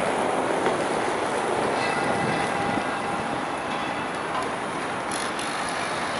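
Steady city street traffic noise, with a van passing close by near the start.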